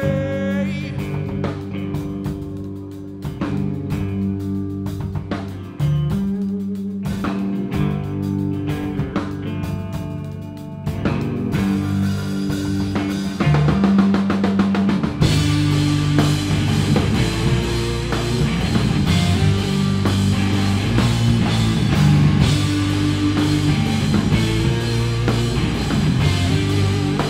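Live rock band playing an instrumental passage on electric guitars, bass and drum kit: a sparser riff with separate drum hits that builds, then the full band comes in louder with cymbals about fifteen seconds in.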